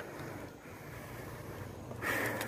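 Faint, steady wind rush on the microphone with tyre and road noise from a bicycle rolling along a street.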